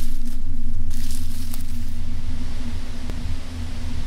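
Strong gusting wind, a rushing hiss that surges and flickers over a deep, steady low drone, slowly dying down.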